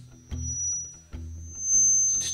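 Live guitar accompaniment between spoken lines: low notes sound about once a second under a thin, high, steady whine.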